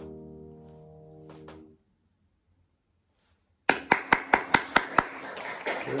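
Violin and piano holding a final chord that dies away, then a couple of seconds of silence, and applause starts: loud, close hand claps about five a second, joined by a thinner patter of more clapping.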